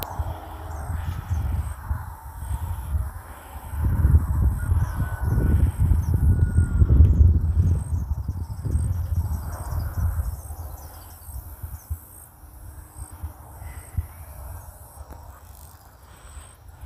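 Garbled, distorted ghost-hunting session audio: irregular low rumbling bursts with honk-like fragments, loudest in the middle and fading near the end. The uploader hears them as spirit voices speaking words.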